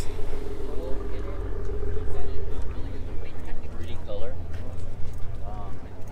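A car engine running nearby, a steady low hum whose pitched part fades out about two and a half seconds in, with the low rumble going on under faint crowd chatter.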